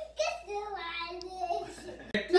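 A young child's voice singing a few drawn-out notes that step up and down in pitch.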